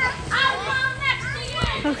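Children's voices: high-pitched calls and chatter of kids at play, with a girl saying "okay" at the end and a single thump about one and a half seconds in.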